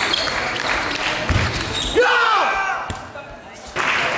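Table tennis rally in a reverberant sports hall: a celluloid-type ball clicking off bats and table. About two seconds in, a player gives a short, loud shout whose pitch rises and falls, the kind of cry that marks a won point. A single sharp click follows about a second later.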